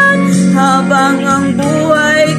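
A woman singing a slow ballad over instrumental backing music, holding one note at the start and then moving through several shorter notes.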